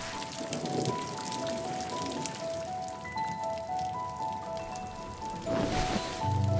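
Gentle music, a slow melody of single notes, over rain falling and pattering. A swell of rushing noise comes just before the end.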